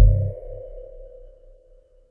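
A break in a midtempo bass track: the heavy synth bass dies away over about half a second, leaving one steady mid-pitched synth tone that lingers faintly and fades toward near silence.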